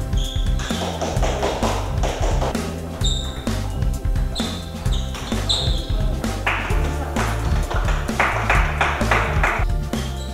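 Background music with a steady, repeating bass beat, over which a table tennis ball can be heard in light, sharp taps now and then during a rally.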